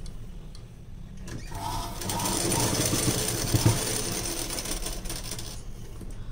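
Sewing machine stitching a seam in blouse lining fabric. It starts about a second in, picks up speed, runs steadily and stops shortly before the end.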